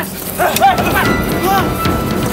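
Men shouting short yells in a scuffle, over a noisy background.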